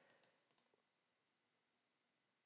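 Four faint, short clicks of a computer mouse in two quick pairs within the first second, as a tab on a web page is clicked; otherwise near silence.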